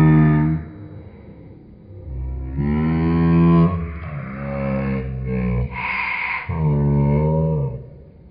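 A low voice making long, wordless held tones: about five sustained notes with slight pitch bends and short gaps between them, and a brief breathy hiss about six seconds in.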